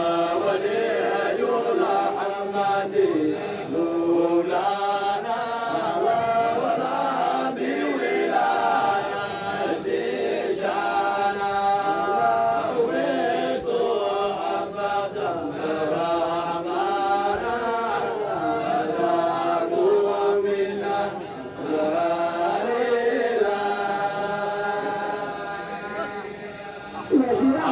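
A group of men chanting a Sufi dhikr of the Qadiriyya order in a continuous melodic chant, lines rising and falling in pitch.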